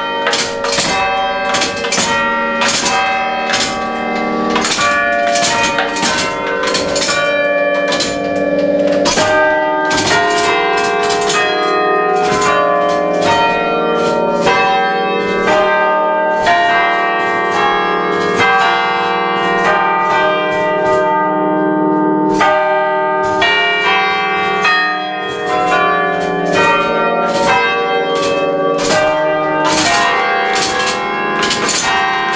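Church bells playing a tune, struck by the hammers of an automatic pinned-barrel carillon machine. It is an even run of struck notes, about three a second, each ringing on under the next.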